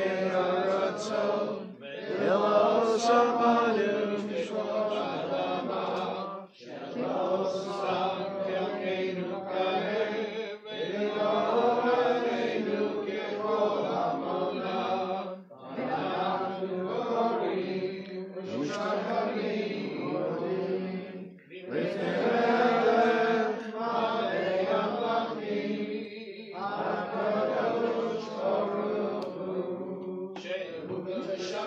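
Voices chanting a Hebrew prayer together, in long phrases broken by short pauses every few seconds.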